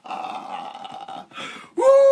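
A man's rough, drawn-out vocal exclamation, a hoarse "woo" held for about a second as his laughter trails off; his loud voice starts up again near the end.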